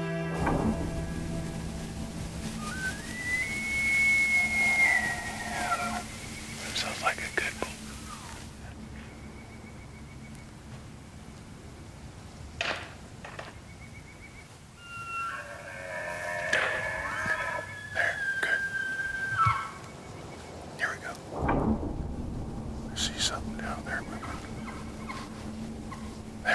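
Bull elk bugling twice: a high whistle that rises, holds and falls about three seconds in, then a longer, more broken bugle from about fifteen to twenty seconds in. Scattered sharp clicks fall between the calls.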